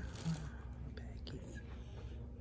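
A soft, whispered voice, with a short rustle of plastic bags about a quarter second in.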